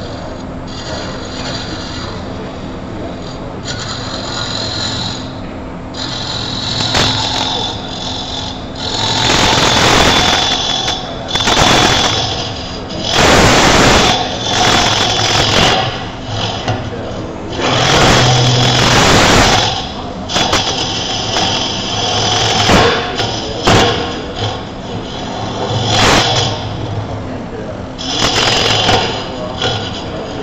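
Wood lathe running with a steady motor hum while a turning tool cuts into the spinning wood blank. The cuts come in repeated passes, each a louder rasping surge lasting a second or two.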